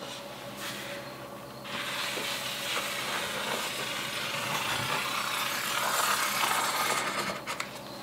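Felt-tip marker drawn along the edge of a long level across a sheet of paper: a steady rubbing of the tip on paper that starts about two seconds in and stops shortly before the end.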